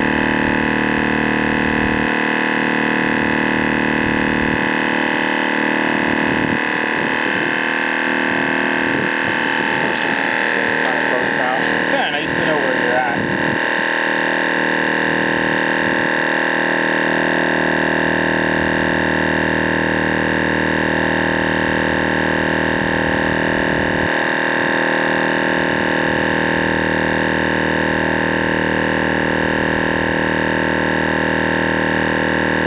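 MotoMaster heavy-duty twin-cylinder tire inflator running steadily as it pumps a tire up toward 80 PSI: a constant mechanical hum made of several steady tones.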